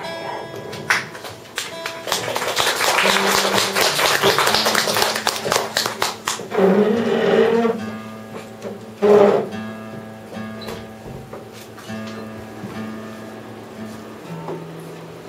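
A live band plays on electric bass and guitar. A loud, dense strummed passage starts about two seconds in, and after about six seconds it thins out to quieter held bass notes.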